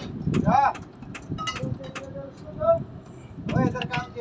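Short, indistinct voice fragments with scattered light clicks and knocks, over a low background rumble.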